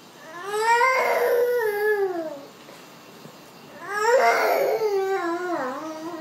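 A young child's fussy crying: two long wailing cries, each rising and then falling in pitch, with a short quiet gap between them. It is the whining of an overtired toddler fighting sleep.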